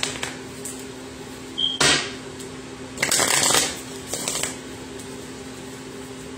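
A deck of tarot cards being shuffled by hand in four short bursts: a brief one at the start, one just before two seconds in, the longest around three seconds in, and a shorter one soon after.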